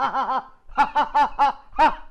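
A man laughing out loud in a run of short, rhythmic 'ha' bursts, with a brief break about half a second in.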